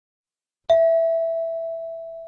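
A single chime, struck once about two-thirds of a second in: one clear tone with fainter higher overtones, dying away slowly over about two seconds. It is the cue tone of a recorded listening test, sounding just before the next question is read.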